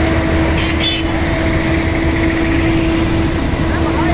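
Street traffic with a vehicle engine running steadily, giving a constant low rumble and a steady hum. A brief high hiss comes about a second in.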